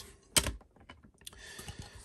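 Hard plastic graded-card slabs clacking as one is set down and the next picked up from the stack: one sharp click about a third of a second in, then a few faint taps and a soft sliding rustle.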